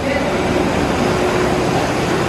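Steady machinery noise: a constant hum under an even rushing hiss, with no change in pitch or level.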